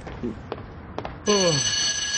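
An electric school bell starts ringing about a second in: a sudden, steady, loud ring of several high tones that carries on without a break.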